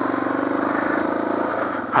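Suzuki DR650's single-cylinder four-stroke engine running at a steady pace on a dirt trail, an even pulsing drone with no change of revs.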